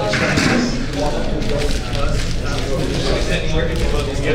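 Several people talking at once in a large room, with a steady low background rumble.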